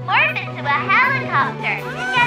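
A cartoon character's high-pitched voice babbling in quick rising and falling sounds that are not words, over background music.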